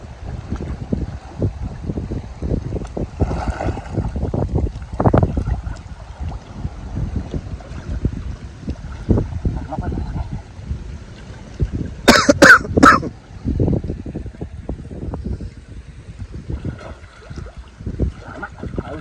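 River water sloshing and lapping around people wading neck-deep, with an uneven low rumble of wind buffeting the microphone. A short, loud, sharp burst of sound stands out about twelve seconds in.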